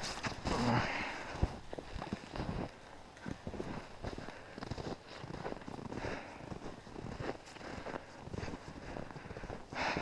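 Footsteps crunching through deep snow at a walking pace, a string of soft irregular crunches.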